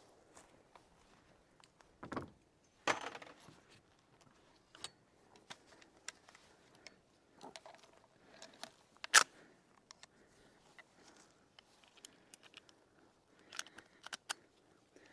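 Faint metallic clicks and small rattles of guns and cartridges being handled, with one sharp click about nine seconds in.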